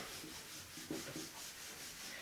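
A whiteboard eraser rubbing across a whiteboard, wiping off marker writing in a few faint strokes.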